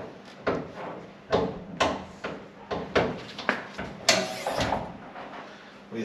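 Bonnet of a Toyota Supra Turbo being unlatched and lifted open by hand: a string of short clicks and knocks from the latch and bonnet, the loudest a little after four seconds in.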